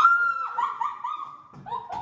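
Dog whining: one long high whine, then a quick run of short whimpers.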